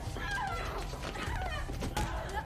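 A person laughing in high, wavering squeals.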